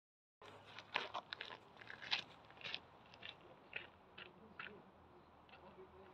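Footsteps crunching on gravel: a faint series of irregular crunches about every half second, growing quieter as the walker moves away from the microphone and stopping near the end.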